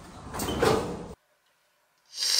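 Luggage being loaded onto a wheeled steel roll-cage cart, a scraping clatter that is loudest about half a second in and cuts off abruptly after about a second.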